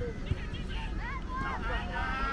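Several children's voices shouting and calling over each other, with wind rumbling on the microphone and a single thump about a third of a second in.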